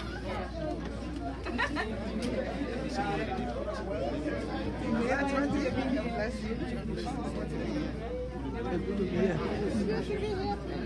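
Many people talking at once as they greet one another: overlapping conversational chatter in a large room, with a steady low hum underneath.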